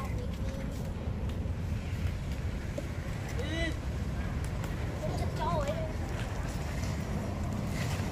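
Children's short calls, twice, over a steady low rumble.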